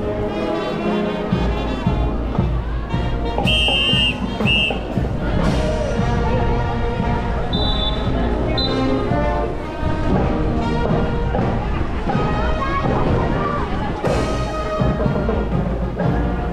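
A marching band playing, with brass and drums, mixed with crowd voices.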